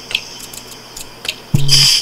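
Faint room hiss with a few small ticks, then, about one and a half seconds in, a voice run through the Voice Synth iPad app starts, held on one steady robotic pitch.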